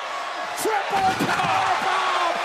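A wrestler crashing through an announce table: one heavy crash about a second in, heard over a loud arena crowd.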